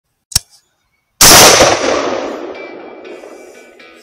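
A short click, then a single rifle shot about a second in that rolls away in a long fading echo. Guitar music starts near the end.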